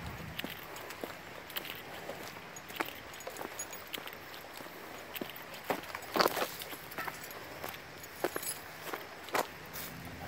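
Footsteps of a hiker walking on a rocky dirt trail scattered with dry fallen leaves: an irregular run of short steps, with a few louder ones about six seconds in.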